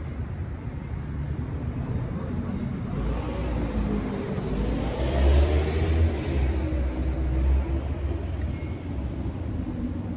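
A motor vehicle driving past on the street: a low engine rumble builds from about three seconds in, peaks around five to six seconds, then fades, its pitch rising and falling as it goes by, over steady traffic noise.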